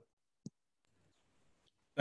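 Near silence, broken by one short click about half a second in.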